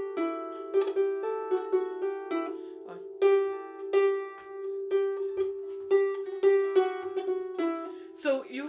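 Irish harp plucked by hand, playing a phrase of a jig melody ornamented with quick triplets: clusters of fast notes leading into the main notes, each note ringing on under the next.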